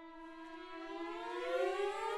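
Chamber ensemble holding a sustained tone while other instruments slide slowly upward in pitch over it, swelling steadily louder.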